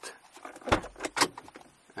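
Renault Espace IV driver's door being opened from inside: a solid latch clunk about three-quarters of a second in, followed by two sharp clicks and a low rumble.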